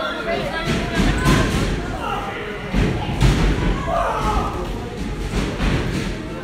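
A few heavy thuds of wrestlers' bodies hitting the wrestling ring's mat and boards, the loudest about three seconds in, echoing in a large hall over audience chatter.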